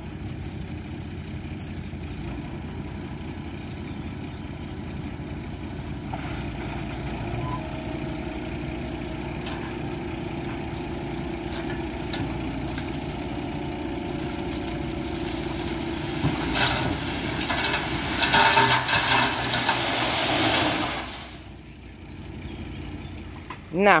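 Tipper truck's engine running steadily while its bed is raised, then a load of gravel pouring out and sliding off the bed, a loud rushing from about two-thirds of the way in that dies away a few seconds later.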